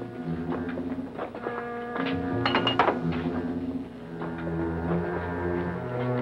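Background score music: held low notes that change pitch every second or so, with a few light knocks near the middle.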